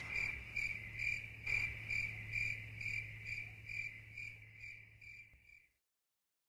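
Cricket-like chirping, evenly spaced at about two short chirps a second, fading out and stopping shortly before the end, over a faint low steady hum.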